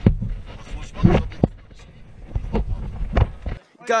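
Men's voices arguing in German over a steady low rumble, which cuts off abruptly near the end; a man then gives a short shout.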